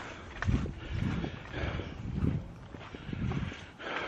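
Footsteps on the woodland ground, a soft low thud roughly every half second to second.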